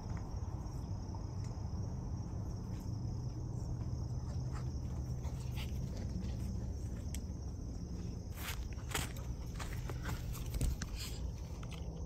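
Footsteps on a dirt path, growing louder and sharper in the last few seconds as the walker comes right up close. Under them run a steady low rumble and a steady high insect drone.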